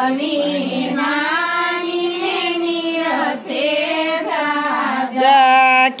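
Women singing a Gujarati devotional kirtan (bhajan) together. The notes are long and held, and they bend up and down, with a short breath break about three seconds in before the next phrase.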